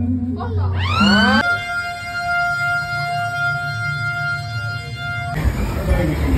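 A low steady hum, then about a second in a siren-like tone sweeps up in pitch and holds one steady high note for about four seconds before cutting off suddenly.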